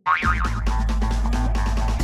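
Cartoon background music cuts in suddenly. A short wobbling boing sound effect opens it, over a steady low bass and repeated percussion hits.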